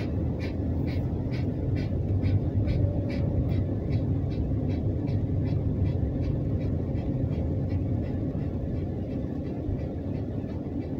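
Low-speed car driving heard from inside the cabin: a steady engine and road rumble. Over it runs a regular ticking, about two to three clicks a second, that fades out about halfway through.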